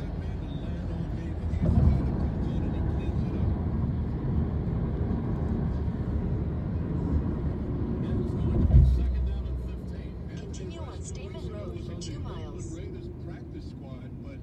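Low road and engine rumble heard from inside a moving car, with two loud thumps about two and nine seconds in. The rumble eases off after about ten seconds.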